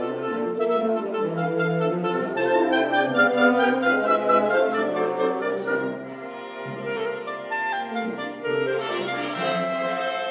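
A youth concert band of clarinets and other wind instruments playing together in sustained chords, with a brief softer passage a little past the middle.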